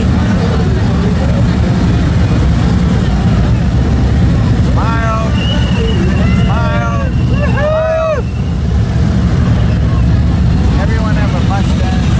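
Police motorcycles' V-twin engines rumbling steadily as a column of them rolls slowly past at close range. In the middle come several short rising-and-falling whooping voices over the engine noise.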